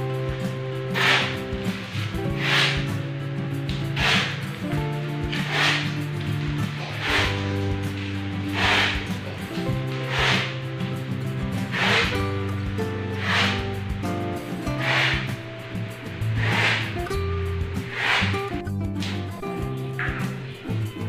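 Background music: held bass and chord notes over a slow, even beat, with a soft snare-like hit about every one and a half seconds.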